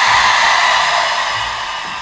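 A crowd cheering and screaming in a loud swell that peaks about half a second in and then slowly fades.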